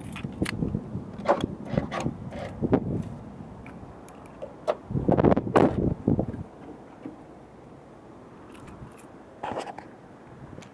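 Handling noises of someone climbing out of a pickup truck: a run of clicks and knocks, with a louder cluster of knocks about five seconds in, then quieter.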